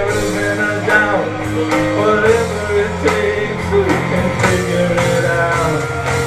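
A live rock band playing a song, with guitar and a voice singing over it.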